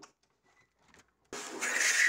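A small click as the window handle is turned, then about a second and a half in a sudden loud rush of wind gusting in through the opened window.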